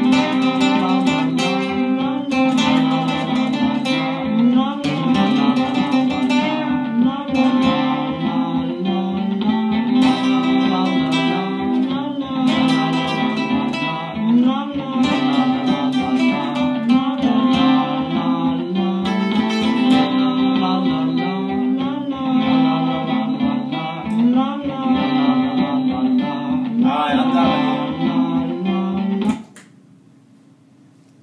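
Acoustic-electric guitar jam built on loops from a Line 6 POD HD500X: a repeating low figure runs under strummed and picked lead lines. The music cuts off suddenly near the end.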